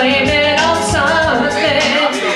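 A woman singing karaoke into a microphone over an amplified backing track with a steady drum beat.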